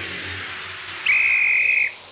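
A referee's whistle blown once about a second in: a single steady high note held for just under a second, then stopped.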